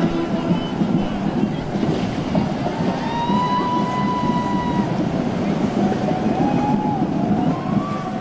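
Busy parade street noise with voices mixed in. A steady high tone is held for about two seconds midway, and shorter wavering tones follow near the end.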